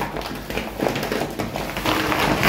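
Rustling and crinkling of a laminated shopping bag and plastic-wrapped groceries as items are rummaged for and pulled out, with scattered light taps and knocks.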